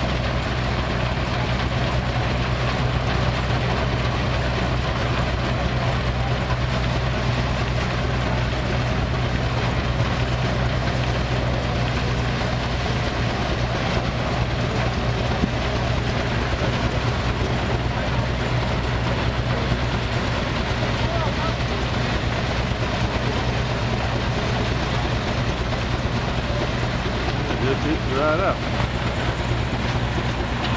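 Belt-driven threshing machine running at steady speed as wheat bundles are fed into it, powered by a flat belt from an Advance-Rumely steam traction engine: a constant mechanical drone with a low hum underneath.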